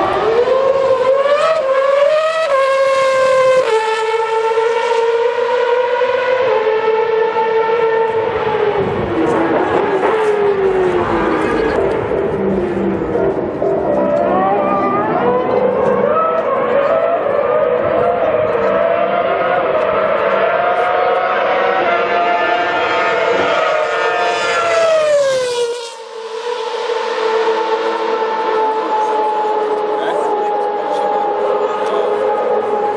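Red Bull Racing Formula 1 car's 2.4-litre Renault V8 at high revs: a high, piercing engine scream that climbs in steps with quick drops at each upshift, falls away in the middle, then climbs again. About 26 s in the sound breaks off abruptly and gives way to a steadier engine note.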